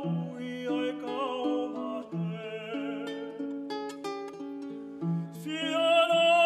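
A man singing a Tongan love song (hiva kakala) with vibrato, accompanying himself on a ukulele with plucked chords and low notes. The voice swells louder near the end.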